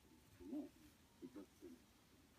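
Faint, muffled, low-pitched talk in short phrases, barely above room tone.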